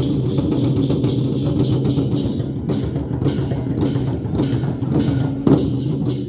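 Troupe of large Chinese barrel war drums beaten fast with sticks, a dense, continuous roll of strokes with a loud accent about five and a half seconds in.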